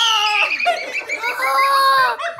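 A young boy screaming in a long, high-pitched voice, with a short break about half a second in, just after the Pie Face game's arm has splatted whipped cream in his face.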